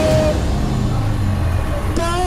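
Protesters singing a solidarity song in the street. A held note ends just after the start, then a steady low rumble takes over until the singing picks up again at the end.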